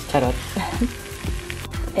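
Kimchi and quinoa sizzling in a nonstick frying pan as they are stirred and turned with a spatula.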